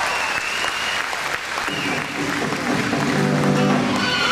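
Audience applauding, with music for the dance starting about halfway through with steady low notes.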